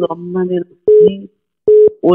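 Speech over a phone line, then two short, steady telephone tone beeps about three-quarters of a second apart in the second half.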